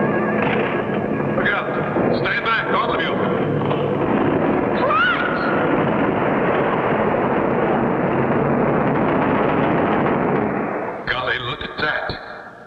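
Cartoon sound effect of a rock wall breaking loose: a long, loud crumbling and tumbling of stone that dies away near the end.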